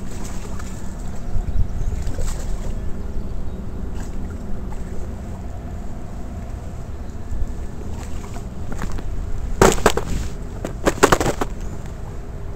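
A smallmouth bass splashing at the water's surface twice near the end, in two short loud bursts, over a steady low rumble of wind on the microphone.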